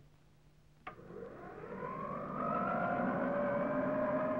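Wind tunnel fan starting up: a click about a second in, then a whine that rises in pitch and grows louder over the next second and a half before levelling off into a steady run.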